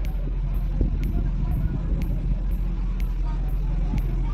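A motor vehicle's engine running steadily close by, a continuous low rumble, with faint voices in the background.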